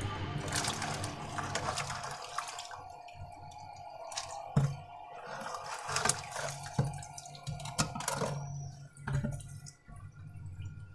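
A small plastic bucket scooping catfish and shallow water from a drum: irregular splashing and dripping, with several sharp knocks of the bucket against the drum.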